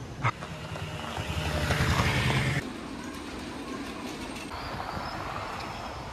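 Street noise with a motor vehicle running, louder for the first couple of seconds and then cutting off suddenly into a steadier background. A single sharp click comes just after the start.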